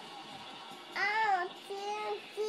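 A toddler's drawn-out, sing-song whining: one rising-then-falling note about a second in and a shorter held note near the end, the fussing of a pouting child.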